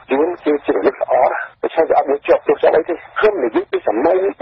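Speech only: one voice talking without pause in Khmer, as on a radio news broadcast.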